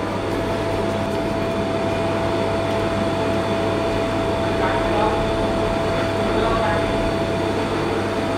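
Restaurant room noise: a steady machine hum with one constant tone running through it, and faint voices in the background.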